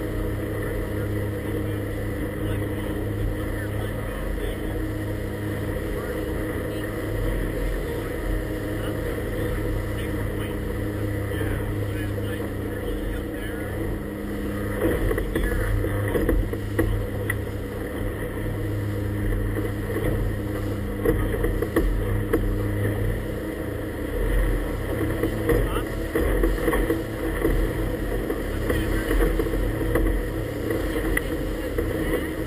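Inflatable motorboat's engine running steadily underway, with water rushing and splashing against the hull. From about halfway on it turns choppier, with irregular louder slaps as the boat meets waves.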